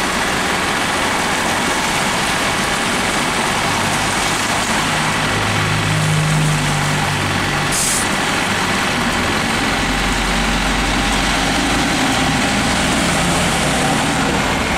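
Diesel double-decker bus pulling away from a stop, its engine note building about five seconds in, with a short hiss of air from the brakes near eight seconds. A deeper engine rumble follows as it moves off, over steady wet-road traffic noise.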